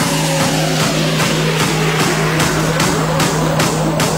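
Hard dance music in the tekstyle style: a kick drum at about two and a half beats a second over a steady bass note, with rising pitch sweeps in the second half.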